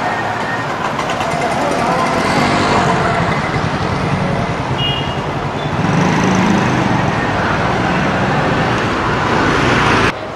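Street traffic: motorcycles and scooters passing with their engines running, over a steady wash of road noise.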